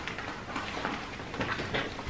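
Faint handling noise of a handbag pouch being fiddled with, with a few small clicks from its metal strap clip being worked.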